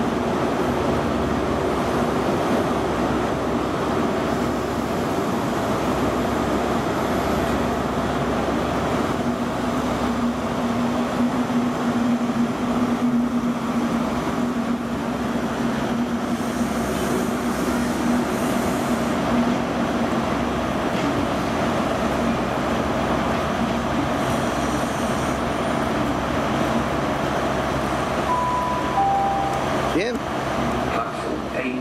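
Diesel High Speed Train units running in the station: a steady engine rumble, with a low hum held through the middle. Near the end comes a brief two-note tone, first higher, then lower.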